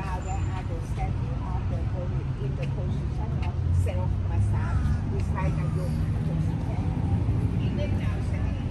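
Outdoor ambience: scattered, indistinct voices of people talking nearby over a steady low rumble.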